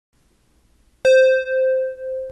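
A single electronic keyboard note struck about a second in, ringing on and slowly fading.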